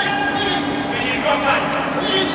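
Short shouts from futsal players, echoing in a sports hall, over a steady low hum.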